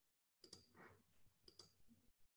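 Near silence broken by a few faint computer mouse clicks, in pairs about half a second and a second and a half in.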